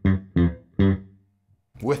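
Fender Boxer Series Precision Bass with P and J pickups, both wide open and the TBX control off, playing three short plucked notes about 0.4 s apart, each dying away quickly, followed by a brief quiet gap.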